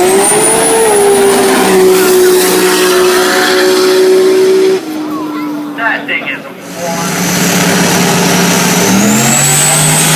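Drag-racing car engines at full throttle. A loud engine note climbs as a car launches, then holds steady for several seconds before dropping away suddenly about five seconds in. After a brief quieter spell another car's engine builds and revs up near the end.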